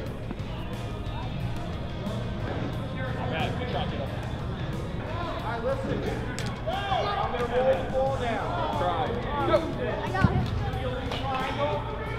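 Background music under children's voices and chatter, the voices growing busier about halfway through. A few light knocks are heard, and a sharp thump comes about ten seconds in.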